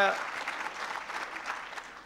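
Audience applause, fading gradually, with the tail of a man's spoken 'uh' at the very start.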